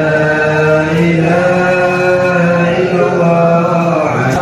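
Arabic Islamic chanting (dhikr), slow and melodic, with long drawn-out held notes.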